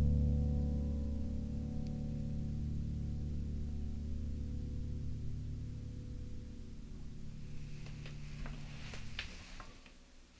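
Yamaha P-45 digital piano holding the song's final low chord, which rings on and slowly fades, then stops about nine seconds in as the keys are released. A few faint clicks near the end.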